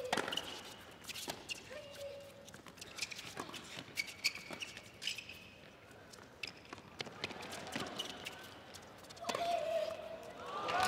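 A tennis rally on a hard court: rackets striking the ball back and forth as sharp hits about a second or more apart, with brief squeaks of tennis shoes on the court between them.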